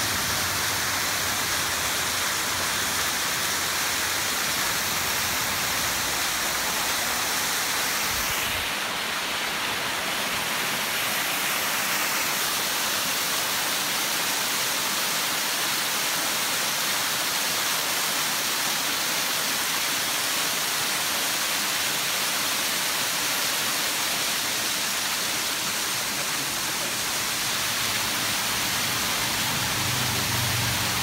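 A waterfall cascading over rock: a steady rush of falling water.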